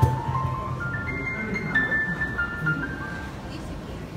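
Live instrumental music from a violin and an electronic keyboard: a melody of high held notes over lower notes, opening with a sharp percussion hit.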